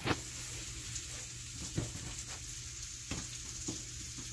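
A steady background hiss with a low hum, broken by four brief soft knocks and rubs as hands set down dough and wipe a stone countertop.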